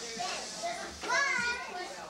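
Young children's voices at play, with one child's loud, high-pitched call about a second in.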